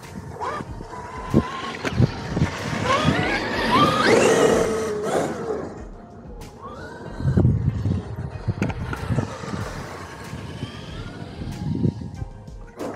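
Traxxas X-Maxx electric RC monster truck driving on grass, its brushless motor whining and rising in pitch as it accelerates, loudest a few seconds in, with another rising whine about halfway. There are several sharp knocks as it bounces.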